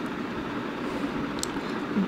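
Steady background hiss with a faint tick about one and a half seconds in.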